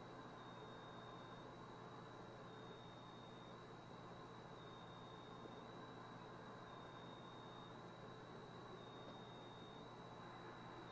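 Near silence: a faint steady hiss with a faint high-pitched tone that wavers slightly in pitch about once a second.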